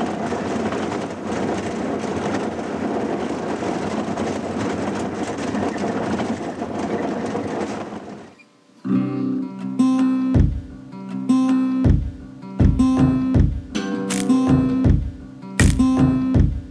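Steady engine and road noise inside a running minibus cabin for about eight seconds. It cuts off, and plucked, strummed guitar music begins.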